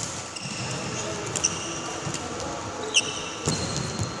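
Badminton rally: sharp racket strikes on the shuttlecock at the start, about a second and a half in and about three seconds in, with shoes squeaking on the court mat and footfalls, one squeak sliding down in pitch near the three-second mark.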